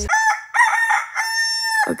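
A rooster crowing cock-a-doodle-doo: a few short notes, then one long held note that cuts off just before the end. It plays as an edited-in morning sound effect, thin in the low end.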